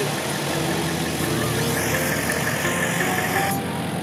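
A pickup truck's engine idling steadily. A faint thin whine joins about halfway through and stops shortly before the end.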